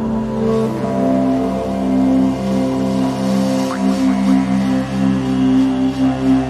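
Meditation music: a drone of steady held tones with a pulsing low line. The pitch shifts about a second in, and a short rising glide comes near the middle.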